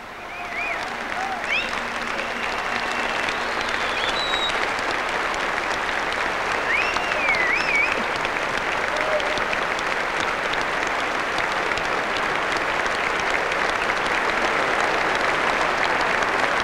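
Large concert-hall audience applauding. The applause swells over the first second or two, then holds steady, with a few rising and falling whistles near the start and again about seven seconds in.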